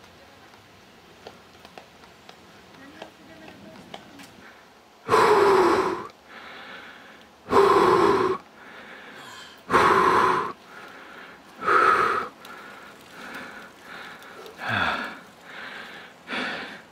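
Heavy breathing of a cyclist close to the microphone. After a few quieter seconds come five loud out-breaths, about two seconds apart, each followed by a fainter in-breath.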